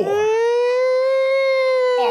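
A man's voice belting one long held note, its pitch rising slightly and then easing down, as a hollered lead-in to a segment jingle.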